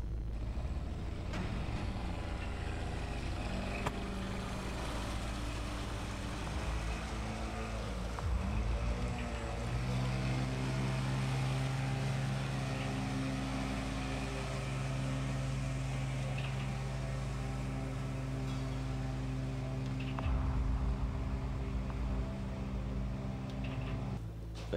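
Small boat's outboard motor running, its pitch wavering at first, then holding steady and louder from about ten seconds in as the boat pulls away across the water, over a low rumble.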